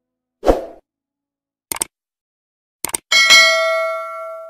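Sound effects of a subscribe-button animation: a short thump, then two pairs of quick clicks, then a bell ding that rings on and fades over more than a second.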